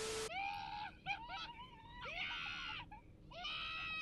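A man screaming in fright over and over: four long, high-pitched screams about a second apart. A short hiss with a steady tone is heard at the very start.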